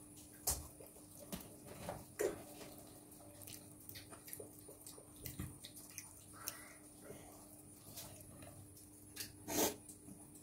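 Faint scattered clicks and soft taps of small handling noises, over a low steady hum.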